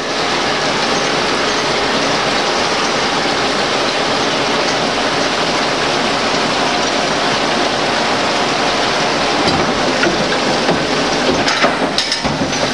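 Six-spindle Cone automatic lathe running through its cutting cycle: a loud, steady, dense machine clatter and hiss with no letup, and a few faint clicks near the end.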